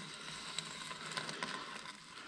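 Faint scraping and small clicks of a stovepipe sliding out of a stove's flue collar as it is pulled out slowly and carefully.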